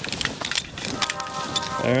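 Footsteps crunching through snow, a quick irregular series of crunches. Soft music comes in about halfway through.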